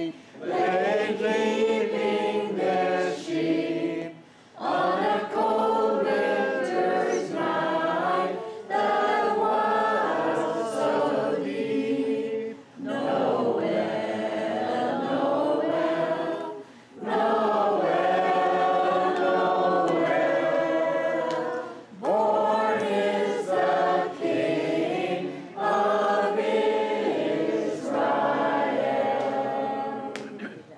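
A group of voices singing a song together in phrases a few seconds long, with short pauses between the phrases.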